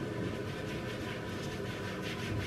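Soft, steady rubbing of a self-tan applicator mitt worked in circles over the skin of the arm, against an even background hiss.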